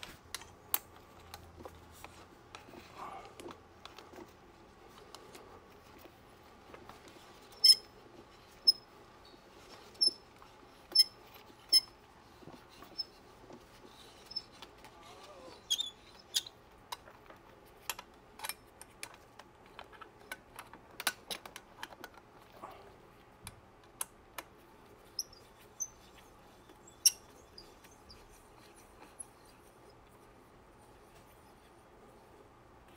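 Scattered sharp metallic clicks and clinks as a mobility scooter's tiller knuckle and collar are worked loose by hand, small metal parts knocking together and dropping. A run of louder clicks comes about a second apart partway through, with one loud clink near the end.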